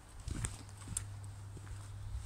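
Footsteps on hard ground while walking: a few light, separate steps over a steady low hum.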